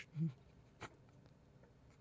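A pause in a quiet studio: a brief, faint murmur from a voice right after the start, then a single faint click a little before the middle, and near silence after.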